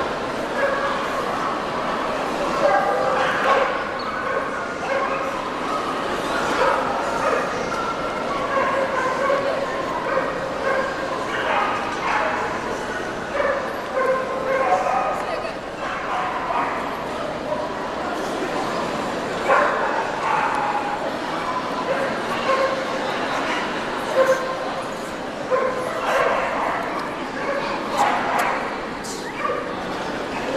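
Small dogs yapping and barking again and again over the steady chatter of a crowd.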